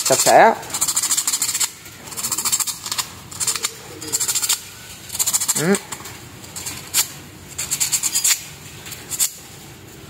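Sandpaper rubbed back and forth over a soldering iron tip: a run of short rasping strokes, roughly one a second. It is scouring the black oxide layer off the tip so that the tip will take solder again.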